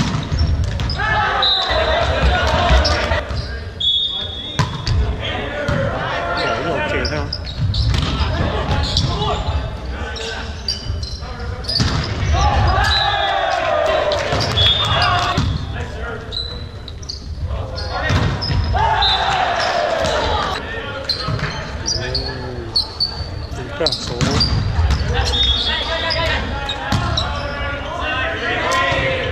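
Volleyball rally in a gym: players and spectators shouting and cheering, echoing in the hall, with sharp hits of the ball and brief sneaker squeaks on the court floor.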